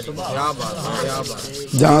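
A man's voice speaking, quieter at first, with much louder speech starting near the end.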